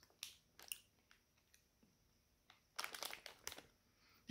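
Near silence, with faint sporadic clicks and crinkles from chewy candy being chewed and a plastic candy bag being handled, most of them about three seconds in.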